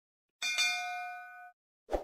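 Bell notification sound effect: one bright ding about half a second in, ringing out for about a second, followed by a short soft pop near the end.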